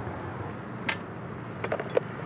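A sharp click about a second in and a few small knocks near the end as belongings are put into a motorbike's under-seat storage compartment, over a low steady street hum.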